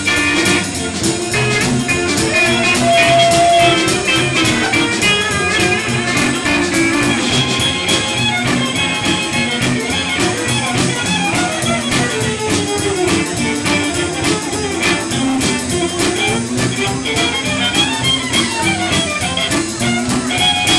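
Live band playing an instrumental passage: electric guitar, upright bass, drum kit, pedal steel guitar and fiddle, with melodic lead lines over a steady rhythm and no singing.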